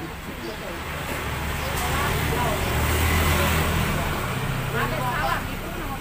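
A car drives past close by, its engine and tyre noise swelling to a peak about three seconds in and then fading, with bits of people talking near the end.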